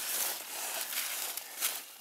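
Dry soybean stalks, leaves and pods rustling as someone moves through the crop: an even crackly brushing with a few sharper crackles.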